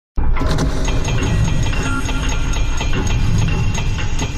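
Sci-fi sound-design track for an animated space intro. A dense, heavy low rumble with many clanks and a few steady high tones, starting abruptly.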